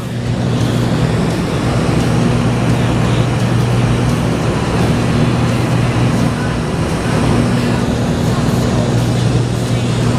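Single-engine light propeller aircraft heard from inside the cabin in flight: a loud, steady engine-and-propeller drone with a low hum over constant rushing noise.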